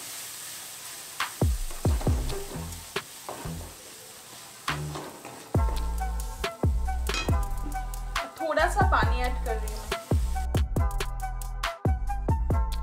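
Wooden spatula stirring and scraping a tomato-and-spice masala sizzling in an aluminium kadhai, with sharp knocks now and then. Background music with a heavy bass comes in about halfway through and carries on over the stirring.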